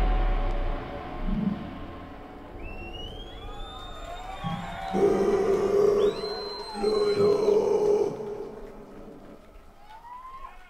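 A heavy rock band's last chord dies away, then high gliding, whining tones and two loud held droning tones sound over a crowd's scattered applause as the song ends.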